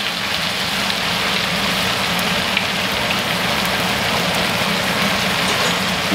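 Two NY strip steaks searing in melted butter in a cast-iron skillet: a steady, even sizzle, with a low constant hum underneath.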